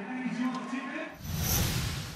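A voice speaking briefly, then about a second in a whoosh transition effect swells up, with a low rumble and a high shimmer, peaking near the end.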